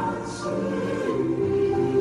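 Slow choral music: voices singing long held notes in chords, with the chord changing about a second in.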